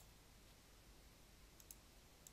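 Near silence with a few faint clicks of a computer mouse: one right at the start and a couple about one and a half seconds in.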